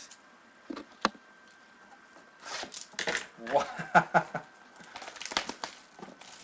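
Clear plastic shrink wrap being cut and peeled off a sealed trading-card hobby box, crinkling in short bursts, after a single sharp click about a second in.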